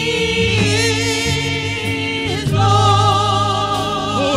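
Gospel singing in a church service: voices hold long notes with vibrato over a steady low accompaniment, the chord changing twice.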